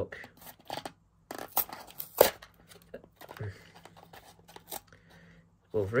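A small cardboard blind box being torn open by hand: scattered sharp rips, crackles and scrapes of card, the loudest snap about two seconds in.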